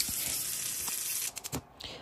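Kitchen faucet running a steady stream of water into a metal pot, filling it, with a steady hiss that stops a little over a second in, followed by a few quick knocks.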